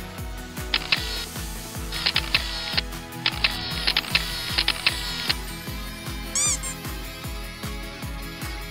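Background music with a steady beat, with rapid camera-shutter clicks in three runs during the first five seconds. A brief pitched sound effect comes about six and a half seconds in.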